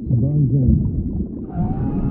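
LeBron James's voice from the 'scream if you love' meme clip, run through an underwater effect: heavily muffled, with only the low part of the voice left and its pitch wobbling up and down.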